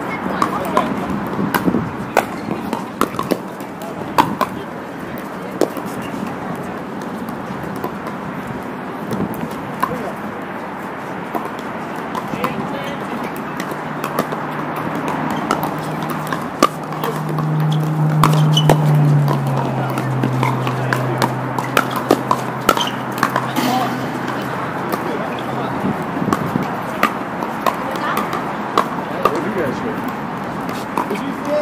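Pickleball paddles striking plastic balls on several courts: many sharp, irregular pops, over the chatter of players. A low hum swells and fades in the middle.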